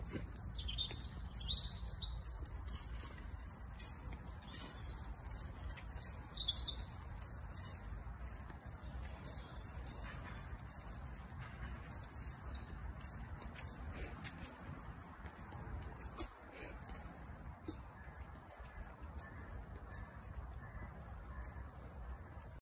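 Wild birds singing in trees: short high chirps in a few clusters during the first seconds, again at about six and twelve seconds, with fainter repeated notes later, over a low steady rumble.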